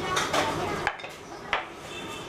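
Lacquered box and lid being handled and set down on a table, with a few light clacks; the clearest come about a second in and at about a second and a half.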